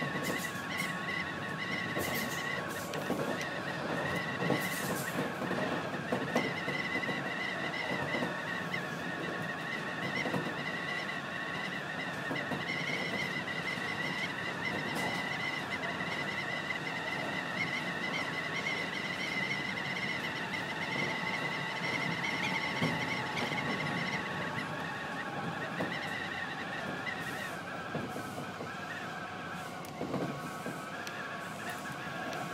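Keihan electric commuter train running at speed, heard from inside the front car: a steady rumble of wheels on rail under a high, wavering whine from the drive. The whine sinks a little in pitch and level near the end as the train eases off.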